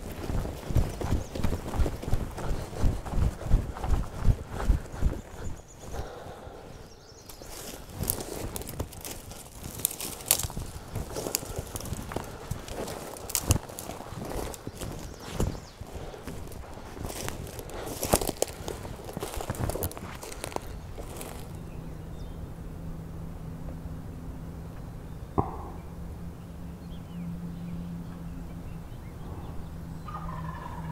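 Footsteps through dry grass and brush, an even tread about two steps a second, followed by irregular rustling and crackling of twigs and brush. This is a hunter walking out and setting a turkey decoy at the hedgerow edge. In the last third there is a steadier low hum with one sharp click.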